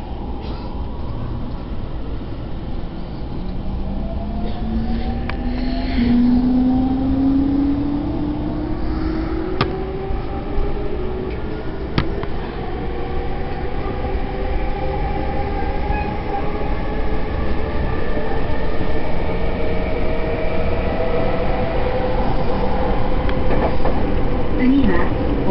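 Electric commuter train accelerating, heard from inside the carriage: the traction motors' whine climbs steadily in pitch over the rumble of wheels on rail. Two sharp clicks come about ten and twelve seconds in.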